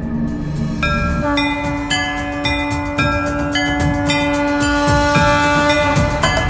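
Dramatic background score: a held low drone note under a quick stepping run of short, bright higher notes that change several times a second.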